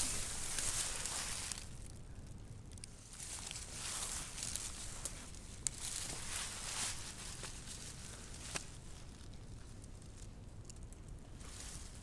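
Footsteps and rustling through dry pine needles and brushy undergrowth, coming in bursts with quieter spells between. Two short sharp clicks, one about halfway through and one a little past two-thirds of the way.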